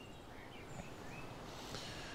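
Faint chirps of distant birds over low, steady outdoor background noise.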